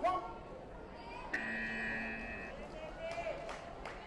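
Electronic match buzzer sounding one steady tone for about a second, marking the end of the rest period between rounds, over the chatter of a crowd in a sports hall.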